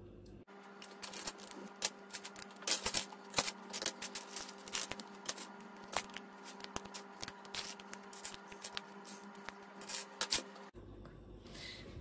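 Loose plastic Lego bricks clicking and clattering in quick irregular taps as they are sorted by hand and pressed together, over a faint steady hum.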